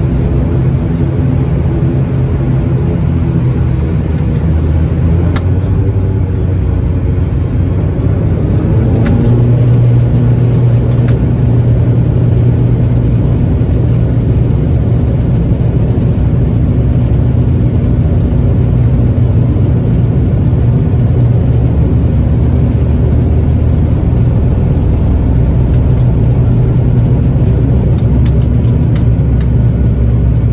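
The ATR 72-500's twin Pratt & Whitney Canada PW127 turboprops and six-blade propellers at takeoff power, heard from inside the cabin during the takeoff roll. It is a loud, steady propeller drone that grows louder about nine seconds in and carries on to lift-off at the end.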